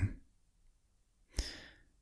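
A narrator's single short breath, about one and a half seconds in, in a pause between spoken sentences.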